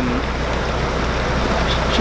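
Steady rush of water with a low, even hum beneath it: water leaking through the lock gates and the narrowboat's engine idling while the boat sits in the lock.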